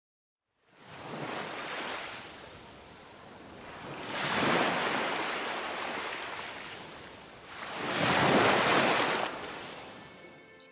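Ocean waves breaking and washing in, three swells a few seconds apart, each rising and then fading.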